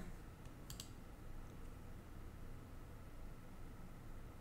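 A couple of soft, quick clicks a little under a second in, a computer mouse button being clicked, over faint room tone with a low hum.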